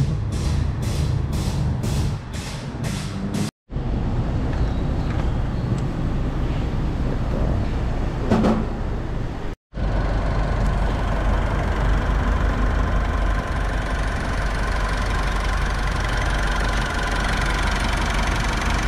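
Mitsubishi Triton's DI-D diesel engine idling steadily from about ten seconds in, running on freshly changed engine oil; it is idling smoothly. Before that, mixed workshop noise.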